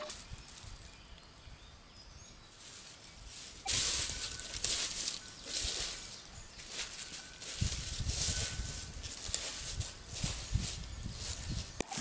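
Footsteps rustling and crunching through dry fallen chestnut leaves, starting about a third of the way in, with a couple of faint, brief steady tones from a metal detector.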